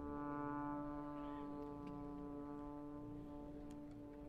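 Drum and bugle corps horn line holding one long sustained chord, its upper notes thinning out over the last couple of seconds while the lowest note holds on.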